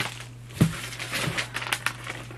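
Padded paper mailer and its packaging crinkling and rustling as they are handled and the contents pulled out, with a dull bump about half a second in and a cluster of sharper crackles near the end.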